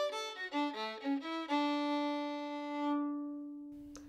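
A fiddle playing a quick run of short notes, then one long held note that swells, fades and stops near the end.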